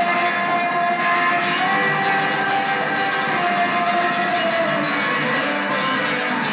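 Live blues on electric guitar and harmonica, with long held notes that step between pitches every second or so over the guitar.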